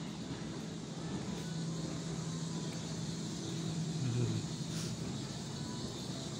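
Steady low mechanical hum of a large store's background, with faint indistinct noises and a brief louder low swell about four seconds in.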